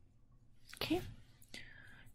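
Mostly quiet room tone with one short, soft breathy vocal sound about a second in, like a whispered murmur or breath into the microphone.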